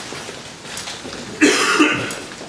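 A person coughing off-camera: one short, loud cough about a second and a half in.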